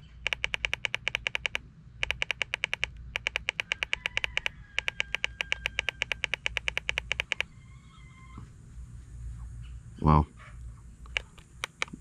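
A trail camera's keypad sounds a rapid string of short electronic ticks, about seven a second, as its up button steps the video-length setting upward. The ticks come in four runs with brief gaps and stop about seven seconds in, leaving only a few scattered ticks.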